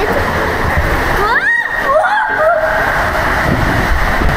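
Steady rushing and splashing of water through a water-slide tube as riders slide down it. Halfway through there is a wavering, rising-and-falling cry from a rider.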